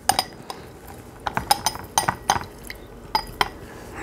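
Metal hand-held lemon squeezer clinking against a drinking glass while a lemon is squeezed: about a dozen short, sharp, irregular clicks.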